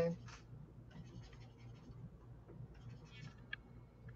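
Faint scratching of a stylus on a drawing tablet during sketching, in two short spells, with a small click near the end.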